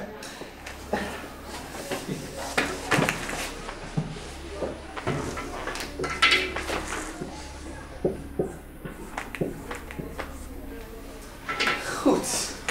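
Marker writing on a whiteboard: scattered short taps and strokes, one brighter stroke about six seconds in, over a low steady hum.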